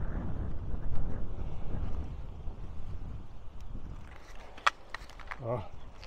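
Low wind rumble on the microphone while riding a bicycle. About three-quarters of the way through there is a single sharp clack from a dropped thermometer, followed by a man's short 'Ah'.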